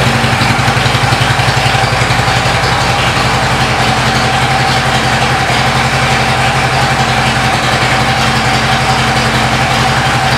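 A 2014 Harley-Davidson Ultra Classic's air-cooled Twin Cam 103 V-twin, fitted with a Vance & Hines exhaust, idling steadily with an even, fast low pulse.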